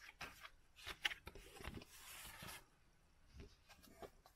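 Paper record sleeve and card handled: faint rustling with a few light clicks, and a short sliding rustle about two seconds in.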